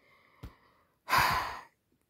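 A person sighing: one breathy exhale about a second in, lasting about half a second, after a short click.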